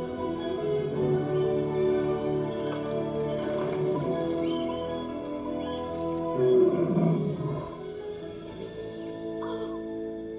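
Animated-film score music with sustained held tones, playing over a room's speakers. About six and a half seconds in comes a louder creature call.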